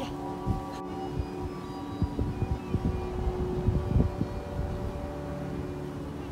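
Steady layered tones like quiet background music, with irregular low rumbles and thumps of wind buffeting the phone microphone, strongest in the middle.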